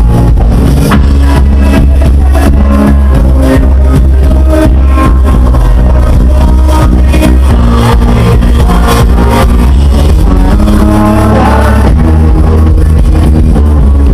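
Live band playing a dance track very loud, with heavy bass and a steady drum beat.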